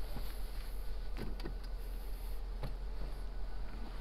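Electric motor of the second-row seat in a 2022 Mercedes GLE350 whirring steadily as the seat drives forward for third-row entry, with a few faint clicks.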